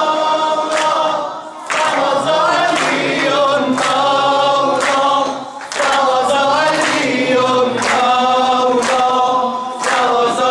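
Unaccompanied group singing of maddahi devotional chant, many voices in unison. It comes in sung phrases of about four seconds, with a short breath between them.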